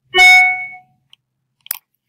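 A short, loud tone with several overtones starting just after the start and fading out within about half a second, then a single click near the end.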